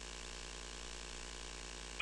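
Faint steady electrical hum and hiss with a buzzy, even tone, unchanged throughout.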